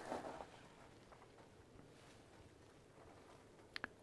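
Near silence: faint outdoor ambience, with two brief clicks close together just before the end.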